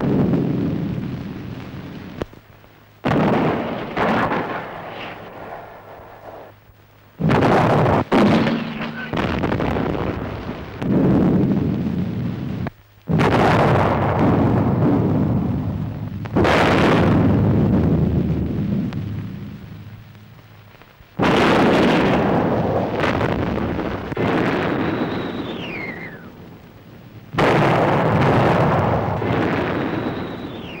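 Artillery shell explosions on an old film soundtrack: about ten sudden heavy blasts, each dying away over a second or more, with the falling whistle of an incoming shell before the last two.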